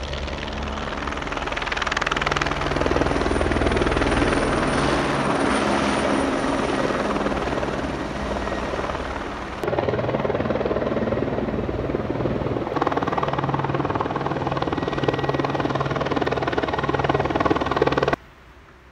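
Helicopter flying low overhead, its rotor beating steadily over the engine. The sound rises as it draws nearer, and jumps abruptly louder about ten seconds in.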